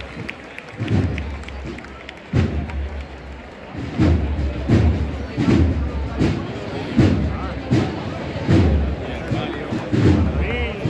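Bass drum of a cornet-and-drum band beating a steady walking pulse, about one stroke every three-quarters of a second from about four seconds in, after two lone strokes earlier. Crowd chatter runs underneath.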